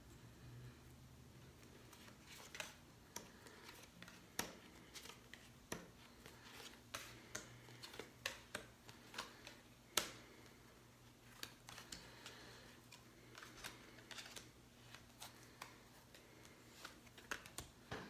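Tarot cards being handled at a table: faint, irregular soft clicks and taps of card against card and tabletop, one a little louder about ten seconds in, over a low room hum.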